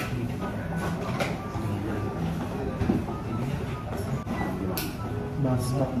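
Indistinct background voices in a busy room, with a few brief, sharp high hiss-like sounds from haircutting work.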